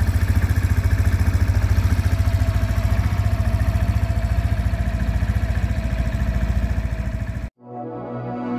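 Mondial Strada 125 scooter's 125 cc engine idling with an even, fast pulsing beat. It cuts off abruptly about seven and a half seconds in, and music starts.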